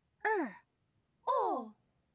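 Two short cartoon character voice sounds, each sliding down in pitch: one about a quarter second in, the other just after a second in.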